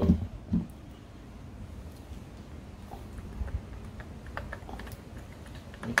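Light clicks and taps of metal parts, a few in the second half, as the starter motor is wiggled loose from a Honda CBR600F4i engine case.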